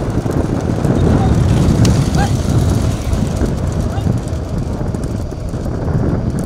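Steady low rumble of a motor vehicle running at speed with wind buffeting the microphone, while voices shout along the road.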